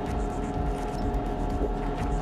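Steady mechanical hum of the International Space Station's cabin ventilation and equipment, with a constant tone running through it.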